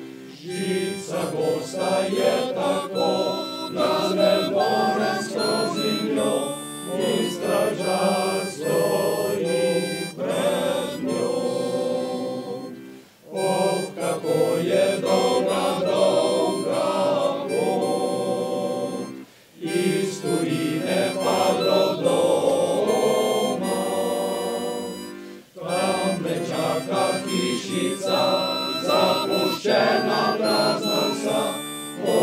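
Men's choir singing in several parts with accordion accompaniment, the phrases broken by brief pauses about every six seconds.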